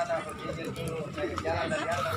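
People talking: a voice speaking in short phrases.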